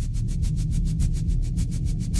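Edited soundtrack sound design: a deep steady low rumble with a fast, even ticking pulse of about six ticks a second, starting abruptly.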